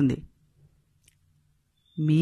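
A pause in speech: the last word trails off, then near silence with a faint low hum and two faint short clicks.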